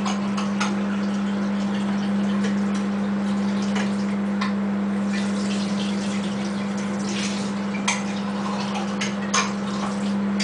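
A 700-watt microwave oven running at full power with a steady low hum, cooking a bowl of cake batter. Scattered faint ticks and crackles sound over the hum.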